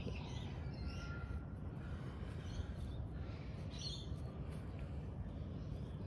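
Faint bird calls, a few short chirps, over a steady low outdoor rumble.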